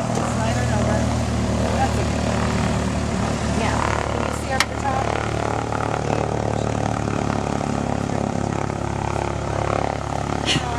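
Cessna 140's four-cylinder aircraft engine and propeller running steadily, heard from inside the small cabin, with one sharp click about halfway through.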